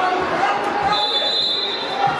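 Spectators' and players' voices echoing in an indoor sports hall, with the dull thuds of a football being kicked on artificial turf. A thin, steady high tone sounds through the second half.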